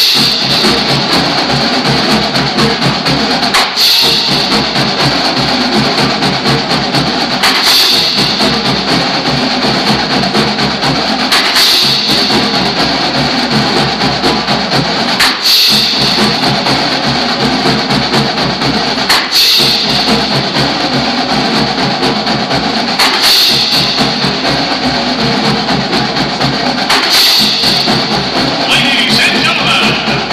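A full marching band playing loudly, with brass and a drum line. A strong accented hit comes about every four seconds.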